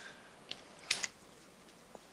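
A few short, sharp clicks over a quiet background: a small click, then a louder double click about a second in, and a faint click near the end.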